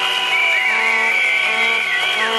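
Protest crowd blowing whistles and horns: several high held whistle tones with notes sliding up and down, over lower horn notes that come and go.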